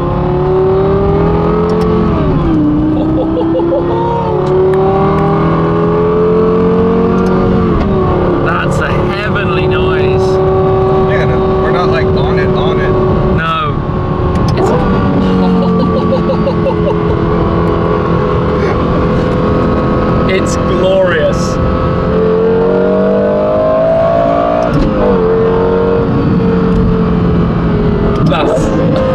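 Lexus LFA's 4.8-litre V10 heard from inside the cabin, pulling through the gears. Its pitch climbs under throttle and drops back sharply at a few upshifts, with steadier cruising between.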